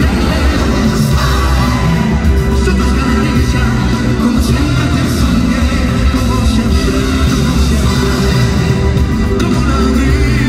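Live pop band music with a male singer, heard through an arena's sound system from the audience seats, with a heavy bass. Keyboards, drums and guitar back the vocal.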